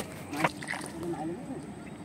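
Faint, low voice sounds with one sharp click about half a second in.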